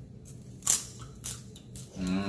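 A person chewing a mouthful of crispy popcorn: a few short crunches, the loudest about two-thirds of a second in.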